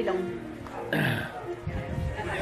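A person's low, drawn-out vocal sound with indistinct voices, over faint background music.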